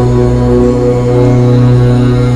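A low "Om" chant held as one long, steady drone at an unchanging pitch.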